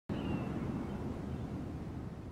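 Low rumbling background noise of the kind wind makes on a microphone outdoors, slowly fading, with a faint brief high whistle near the start.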